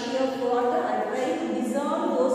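A woman's voice speaking without a break, with some long drawn-out vowels. Only speech.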